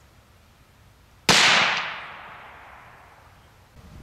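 A single .22 LR shot from a Ruger 10/22 semi-automatic rifle: one sharp report about a second in, with an echo that dies away over about two seconds.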